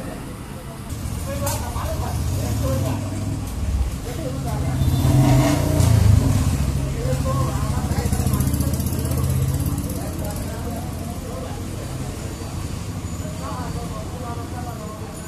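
A motor vehicle's engine running as it passes along the street, building to its loudest about six seconds in and easing off after, with indistinct voices over it.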